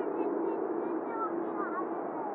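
Air traffic control radio on an airband scanner: a steady hiss on an open channel with faint, broken fragments of voice.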